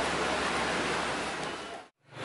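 Steady hiss of rain falling outdoors. It fades down over the last half second and then cuts off abruptly.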